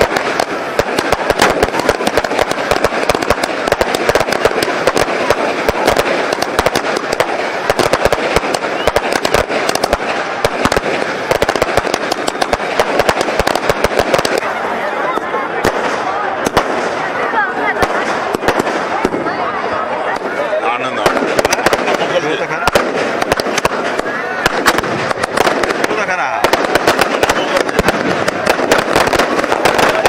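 Fireworks going off without a break: a dense, continuous crackle of many rapid small bangs.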